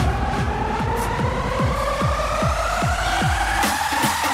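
Electronic dance music: a synth riser climbing steadily in pitch over a regular kick drum, with the low bass dropping out near the end as the build-up peaks.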